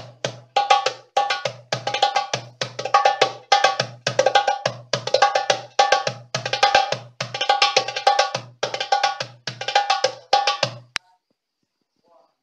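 Darbuka (goblet drum) played by hand: a repeating rhythm of deep, booming doum strokes mixed with sharp, bright tek strokes from the rim. The pattern runs steadily and stops abruptly near the end.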